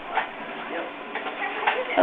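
Background noise from the restaurant end of a telephone call, heard over the phone line's narrow, muffled band: a steady hiss of faint voices with a few small clicks and clatters.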